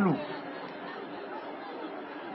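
Low background chatter of a small crowd in a pause between a speaker's phrases, with the end of a man's word falling in pitch at the very start.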